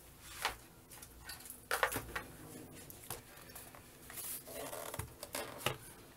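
Faint handling sounds: soft rustles and a few light knocks as a laptop is set down and placed on a wooden desk.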